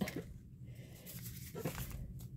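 Faint rustling of paper and cardstock journal cards being handled, with a soft tap right at the start and another near the end.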